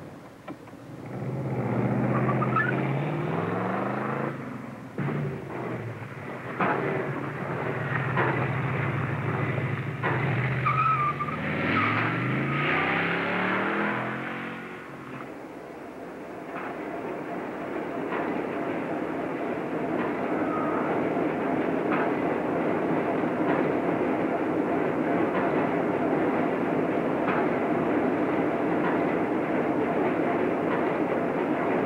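Car engine revving hard as the car pulls away, rising in pitch twice as it accelerates through the gears, with a brief high squeal about twelve seconds in. For the second half there is a steady, even rushing noise.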